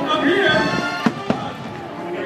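Two firework bursts, sharp bangs about a quarter second apart about a second in, over the show's soundtrack music.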